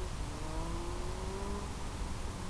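Steady rushing hiss from the analog FPV video link's audio channel, with a faint whine gliding slowly upward through the first half and fading near the end.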